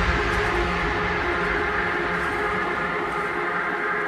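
Electronic music in a breakdown: sustained droning chords over a noisy wash, with the beat gone and the bass fading away.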